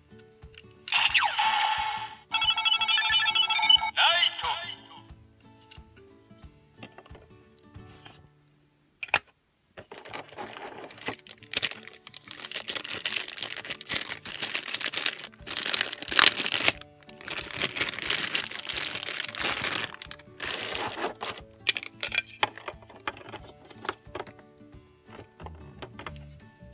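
Kamen Rider Zi-O Ride Watch toy playing its electronic sound effect through its small speaker, with beeping tones, for about three seconds starting a second in. Later, for about ten seconds, clear plastic packaging crinkles and rustles as a Ride Watch is unwrapped from its bag.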